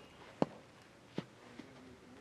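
Two sharp knocks about three quarters of a second apart, the first louder, then a faint tick.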